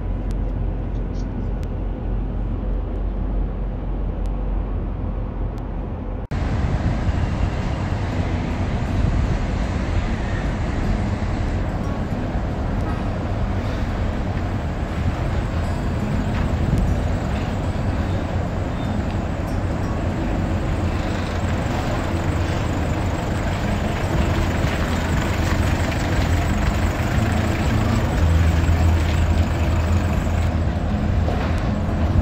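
Outdoor traffic and vehicle noise picked up by a security camera's microphone. About six seconds in, a dull low hum gives way suddenly to this fuller street sound, and near the end a small pickup truck's engine grows louder as it drives close.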